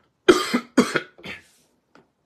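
A man coughing three times in quick succession, the last cough weaker.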